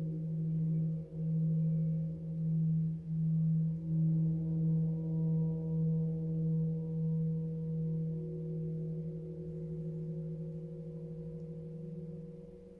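A 36-inch cosmo gong sounding a low sustained hum with several higher overtones. The hum swells and dips about once a second, then evens out slightly quieter after about eight seconds.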